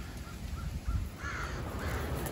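Ravens calling, a few faint short caws, the clearest in the second half, over a steady low rumble.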